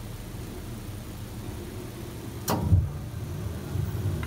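A steady low hum, with one short spoken word about two and a half seconds in.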